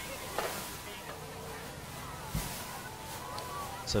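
Quiet background of an outdoor athletics stadium: a steady low hum with faint distant voices, and one soft knock about two and a half seconds in.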